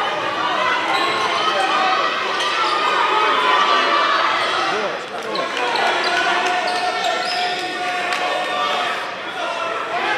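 Gymnasium crowd and player chatter during a basketball game, many overlapping voices echoing in a large hall. A basketball bounces on the hardwood floor now and then.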